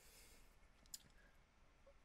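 Near silence: room tone, with one faint click about a second in.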